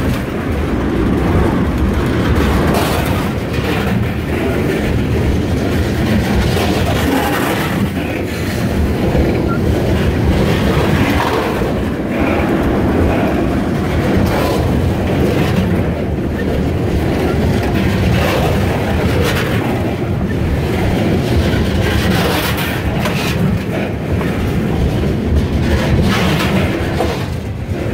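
Freight train cars rolling past close by: a loud, steady rumble with repeated clacks of the wheels over the rail joints.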